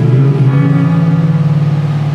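Music with one long low note held throughout, stepping up slightly in pitch about half a second in.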